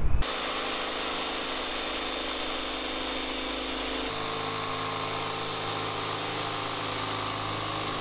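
Corded jigsaw cutting a curve through plywood, its motor and reciprocating blade running at a steady pitch. The tone shifts abruptly about halfway through.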